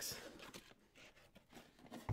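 Near silence: quiet room tone in a small room, with a faint soft noise fading out at the very start.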